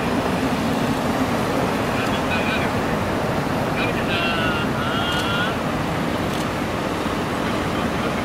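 Steady road noise of a motorcade passing at moderate speed: tyres on asphalt and engines of black Toyota Century sedans and Toyota HiAce vans. A faint voice calls out twice in the middle.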